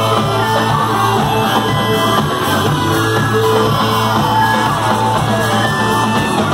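A rock band playing live, with electric guitar, electric bass and drums over a steady beat, and a singer's voice at times.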